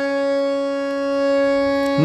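Harmonium holding a single steady note, the tonic Sa that closes the sung phrase. Its reeds sound evenly and without a break.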